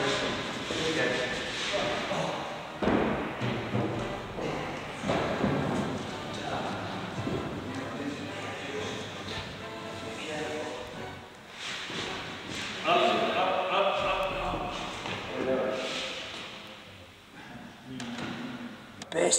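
Indistinct voices over background music, with thuds of the wooden sections of a gym vaulting box being lifted off and set back down.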